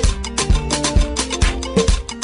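Dance music played by a DJ over a nightclub sound system, with a steady kick drum a little over two beats a second under bass and melodic notes.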